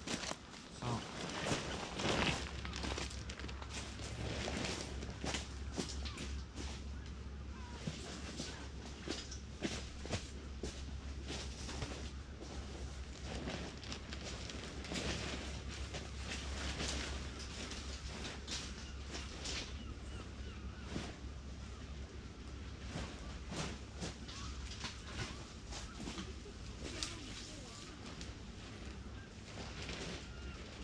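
Irregular rustling and knocking of tent fabric and camping gear as a small dome tent is set up, over a steady low rumble that starts about two seconds in.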